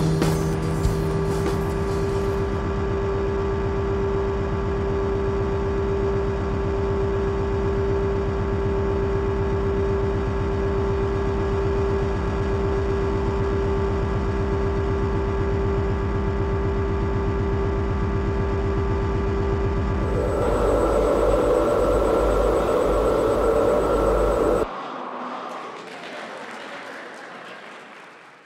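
Electronic drone music: many steady tones held over a fast, low pulsing throb. About twenty seconds in it turns brighter and harsher, then cuts off abruptly, leaving a thin hiss that fades out near the end.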